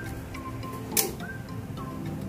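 Bright background music with short, plucked-sounding melody notes. A single sharp click about a second in.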